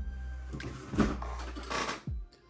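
Handling noise from someone rummaging for a screwdriver: a few short knocks and rustles about half a second in, at one second and near the end, over a steady low hum.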